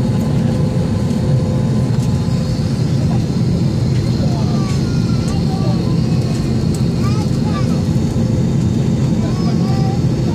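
Steady, loud low hum inside the cabin of an Airbus A320-232 as it moves off the stand, heard from a window seat over the wing. Faint voices of other passengers join from about four seconds in.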